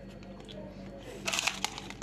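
A person chewing a soft bun with the mouth closed, with a brief burst of crackling clicks a little over a second in.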